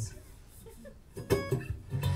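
Acoustic guitar strummed: after a short lull, a few quick strums come in about a second in.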